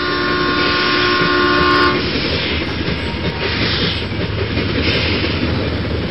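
A freight train's locomotive horn sounds a steady chord that cuts off about two seconds in, followed by the steady rumbling noise of the train running on.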